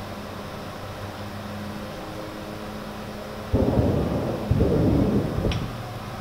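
Two distant explosions about a second apart, each a deep rumbling boom lasting close to a second, over a steady low hum.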